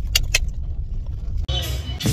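Low, steady rumble of a car's cabin on the move, with a few light clicks in the first half second. It cuts off suddenly about one and a half seconds in.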